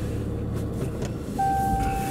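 Ram 2500's Cummins diesel engine running low and steady, heard from inside the cab. About one and a half seconds in, a single steady electronic beep from the truck's dash starts and holds for about a second, as the truck is being backed up.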